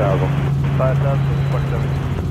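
Steady low drone of a Robinson R44 Raven II helicopter in flight, from its Lycoming IO-540 piston engine and rotors, under air traffic control radio speech.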